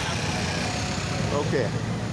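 Street traffic noise with the steady low hum of a nearby motorcycle engine running.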